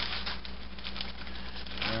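A bluegill fillet being shaken in a plastic bag of crushed saltine cracker crumbs: irregular crinkling and rustling, over a steady low hum.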